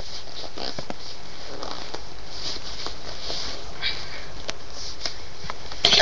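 Faint rustling and scraping with small knocks: tall leather jackboots being tugged off the feet with some struggle.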